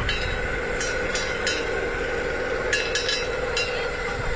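Electric screw oil press crushing peanuts, running with a steady hum and scattered sharp clicks.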